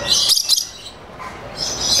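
Lories calling with shrill, high-pitched chatter, loudest in the first half-second and again near the end.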